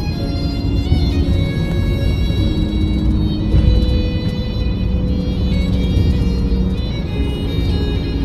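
Music with long held notes playing on a car radio, over the low rumble of road noise inside the moving car's cabin.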